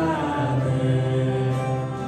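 A live worship band with a group of singers holding long sustained notes over acoustic guitars, keyboard and violin.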